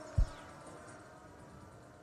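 Faint steady background noise from the cricket-ground broadcast feed, with a single brief low thump just after the start.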